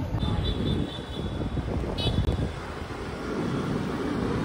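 Motor scooter running as the rider sets off, with heavy wind rumble on the microphone.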